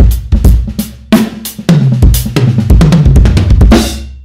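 Acoustic drum kit played loud and busy, with kick drum, snare, hi-hat and cymbal strikes in quick succession. The kit is a DM Lukas Gold with a DW Collector snare and Lobenswert Dark Custom cymbals. A last crash rings out near the end.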